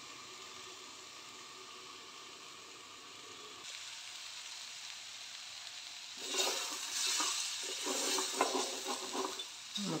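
Mushroom, pea and tomato masala sizzling faintly and steadily in a covered steel pan; about six seconds in, the uncovered pan sizzles louder as a wooden spatula stirs and scrapes through it.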